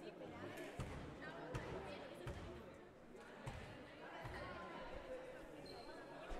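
A volleyball bounced on a wooden gym floor, a thud about every three quarters of a second in two short runs, over faint crowd chatter in the hall.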